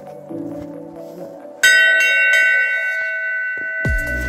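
Hanging brass bell struck once, about a second and a half in, ringing on with several overlapping tones that slowly fade.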